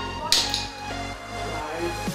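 Background music with a steady beat, over which a single sharp knock sounds about a third of a second in: a thrown ball hitting the cardboard toilet-paper tube target and the wooden floor, knocking the tube over.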